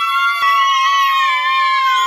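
A woman belting one long, high sung note, loud and held steady, with a slight dip in pitch late on.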